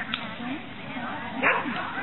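A dog barks once, a short loud bark about one and a half seconds in, over a background of people's voices chattering.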